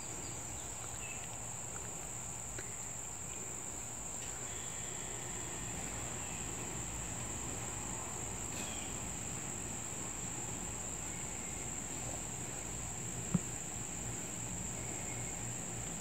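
Steady high-pitched insect chorus, crickets or similar, with one faint click about thirteen seconds in.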